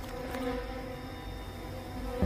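A steady low buzzing hum with a few faint rustles, part of a film soundtrack's night ambience.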